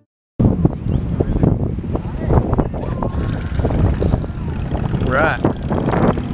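Wind buffeting the camera microphone outdoors, a loud rough rumble heaviest in the low end, starting after a brief gap. A short burst of a voice comes about five seconds in.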